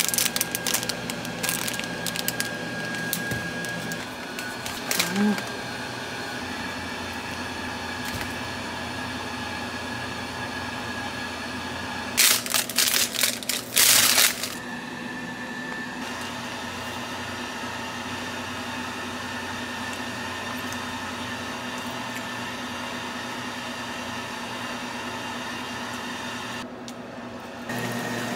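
Clear plastic food wrapping crinkling and rustling as a packaged sandwich is handled and its bag opened. It comes in two spells: one in the first few seconds and a louder one about 12 to 14 seconds in.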